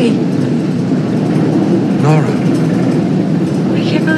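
Metro train carriage running, heard from inside the car as a steady, dense rumble, with a brief voice about two seconds in.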